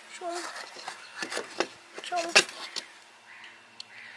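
A few light knocks and clicks as a painted wooden panel is handled and pressed into place against a cabinet, with two short wordless vocal sounds.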